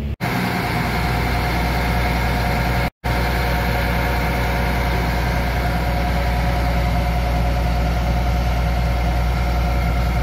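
John Deere 8R-series tractor's diesel engine idling steadily, with two very brief dropouts in the sound, one right at the start and one about three seconds in.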